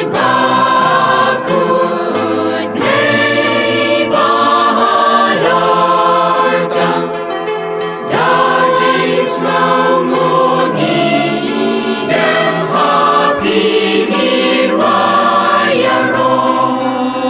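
Background music: several voices singing together in a slow, melodic chant with long held notes.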